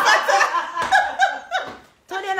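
A woman laughing, several short laughs in a row.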